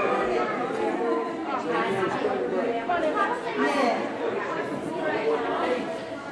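Several people chatting at once in a large room, overlapping conversations with no single voice standing out.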